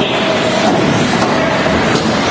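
Several 1/10-scale 4WD electric RC buggies racing: electric motors and tyres running steadily together.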